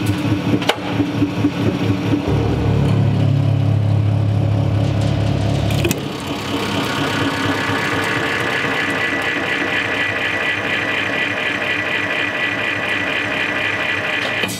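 A 200-ton hydraulic press running its pump as the ram bears down on a flattened speaker. A low steady hum stops suddenly about six seconds in and gives way to a higher, steady whine as the press builds toward about 130 tons of load.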